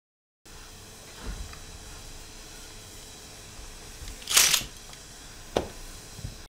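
Steady low room tone broken by a soft low thump about a second in, then a loud, short, sharp click-like noise just past four seconds and a smaller one near the end.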